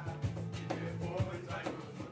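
A small band plays a song with South American influences: an electric bass holds low notes under an acoustic guitar, and a hand drum strikes about twice a second.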